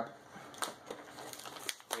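Plastic snack bag crinkling in faint, scattered crackles as a hand reaches into it, with a few sharper crackles near the end.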